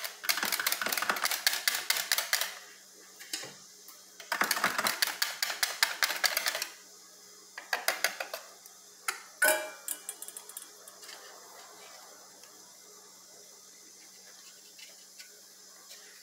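A spoon stirring fast inside a full plastic blender jar of cake batter, a rapid clatter in two bursts of about two seconds each. Then a few scattered clinks as a stainless steel bowl of flour is tipped into the jar, and the rest is quiet.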